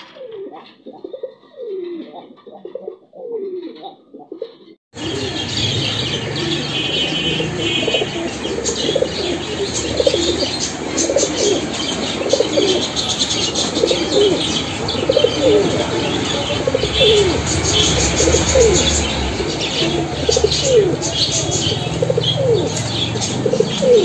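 Pigeons cooing over and over, each coo a short falling call. About five seconds in the sound gets much louder: many coos overlap, with higher-pitched chirping and a low steady hum underneath.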